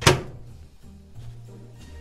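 A single sharp thunk at the very start, the loudest sound here, ringing out briefly, followed by background music with repeating low notes.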